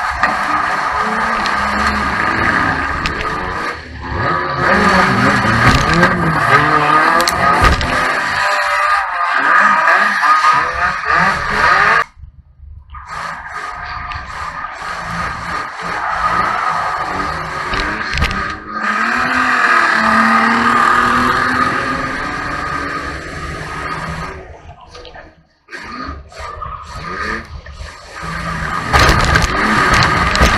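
Banger race car's engine heard from inside the stripped cabin, revving up and down as it races, with tyres skidding on the track. The sound drops out briefly twice, near the middle and again near the end.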